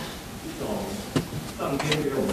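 A man's voice speaking at a podium microphone, with one short click a little over a second in.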